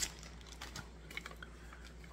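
Faint scattered light clicks and taps of a hard plastic light pole being handled and turned over in the hands.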